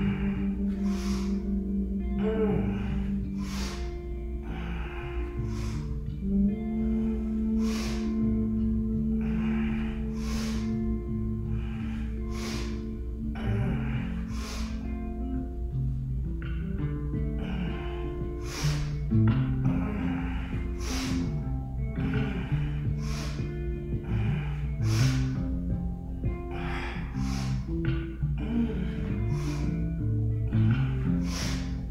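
Background music with a slow, held melody, over a woman's forceful breathing: a sharp breath roughly every second or two, inhaling as the arm sweeps up and exhaling as it comes down.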